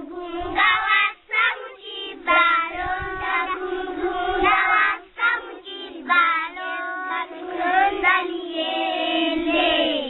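A group of young children singing together in one voice, the song broken by brief pauses about a second in and at the halfway point.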